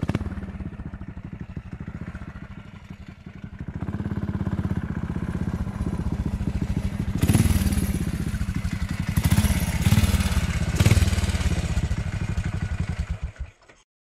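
Several large motorcycle engines running as a group rides off at low speed, in an even low pulsing. Louder throttle swells come about seven, nine and a half and eleven seconds in. The sound cuts off abruptly just before the end.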